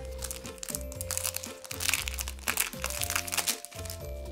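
Plastic crinkling and rustling as a packaged drawstring bag is handled and turned over, over background music with a bass line and sustained notes.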